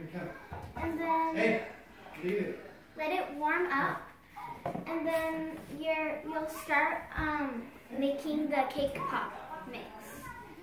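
A child's voice talking, the words not made out.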